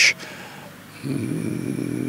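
A man's low, hummed hesitation sound, a throaty 'mmm' through closed lips lasting about a second, in the second half after a brief pause.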